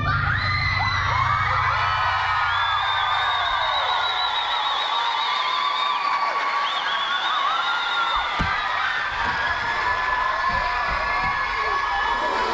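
Theatre audience cheering, with many high shrieks and whoops overlapping, as a dance number's music stops.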